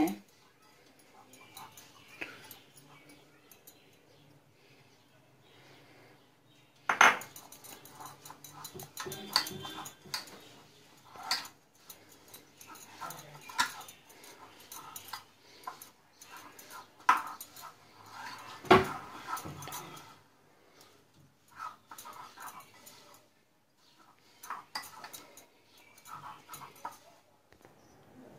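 Mixing desiccated coconut and condensed milk by hand in a glass bowl: irregular knocks and clinks against the glass, with soft rustling of the mixture in between. The loudest knocks come about seven seconds in and again near nineteen seconds. Short faint voice-like sounds are heard in the background.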